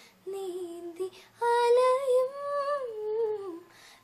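A woman singing a Malayalam song unaccompanied: a short phrase, then a long phrase whose pitch rises and falls before it fades out.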